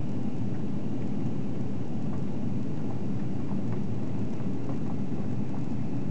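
Steady low roar inside the cabin of an Airbus A340-300: its CFM56 engines and the airflow along the fuselage, heard from a window seat as the airliner descends on approach.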